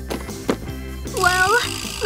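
Light background music. Two small clicks early on as makeup items drop into a cardboard box. Then, about a second in, a woman lets out a high, wavering whine of frustration.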